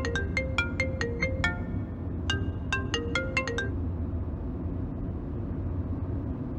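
An iPhone ringtone plays an incoming call as a short marimba-like melody of quick plucked notes. The phrase repeats and cuts off a little past halfway, when the call is answered. A steady low rumble of the car cabin runs underneath.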